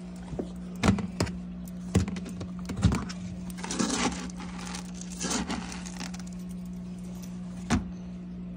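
Dry dog kibble being scooped with a plastic measuring cup: a handful of sharp clacks as the cup knocks the bowl, and short rattles of kibble pouring and shifting in the cup, about four seconds in and again a second later.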